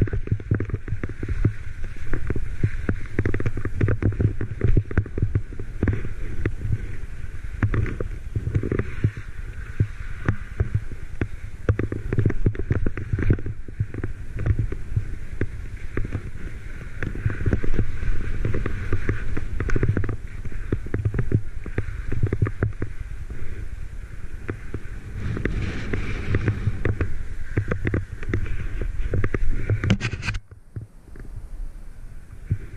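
Wind rumbling and buffeting on a body-mounted action camera's microphone during a fast ski descent, with the skis hissing and scraping over snow.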